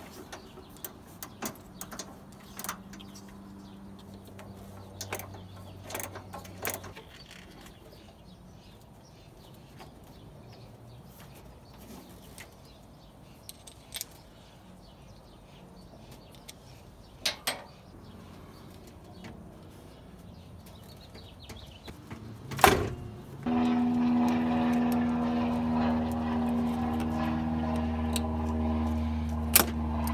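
Scattered metallic clicks and taps of a wrench on the radiator mounting bolts and of a loose bolt being handled. A loud knock about three-quarters of the way in is followed by a much louder steady drone of fixed pitch, which cuts off suddenly at the very end.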